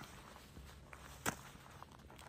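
Faint footsteps on loose stony scree, with one sharper step a little over a second in.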